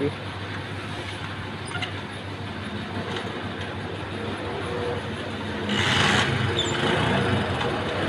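Steady road and vehicle noise on a petrol station forecourt, with a brief louder rush about six seconds in.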